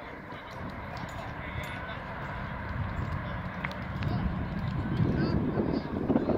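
Indistinct distant voices over a steady low outdoor rumble, growing louder over the last couple of seconds, with a few faint clicks.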